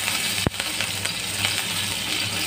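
Mustard and cumin seeds with curry leaves sizzling and crackling in hot coconut oil in a steel pan, with one sharp pop about half a second in.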